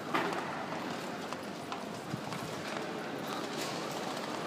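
Footsteps clicking on the hard floor of a busy railway station hall, irregular and overlapping, over the hall's steady hubbub. One sharper knock comes right at the start.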